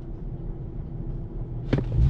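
BMW engine idling, heard from inside the cabin as a steady low hum, with one short click near the end. The owner is drawing attention to the engine's sound and has just asked what is knocking, wondering whether it is a bearing shell.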